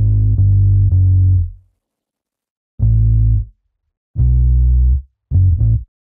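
Sampled Rickenbacker electric bass in Kontakt sounding single low notes one at a time as a bassline is written note by note: one note held about a second and a half, then short notes about three, four and five seconds in, with silence between.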